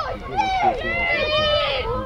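Several voices shouting and calling out over one another.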